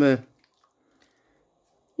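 The end of a man's spoken sentence, then near silence for about a second and a half.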